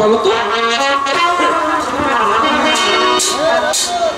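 Live jatra stage band playing a melodic instrumental passage led by a held wind-instrument line.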